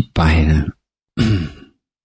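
Only speech: a man's calm voice speaking Thai, a short phrase followed about a second in by a second, falling one that trails off, then silence.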